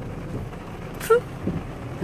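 Steady noise inside a truck cabin in the rain, with the windshield wipers sweeping across the wet glass. There is a short, sharp sound about a second in.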